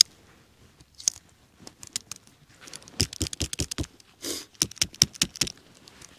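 Sharp metallic clicks and snaps of a Leatherman OHT multitool's folding tools being worked open and shut in gloved hands, a few at first, then a quick run of clicks through the second half with a brief rustle in the middle.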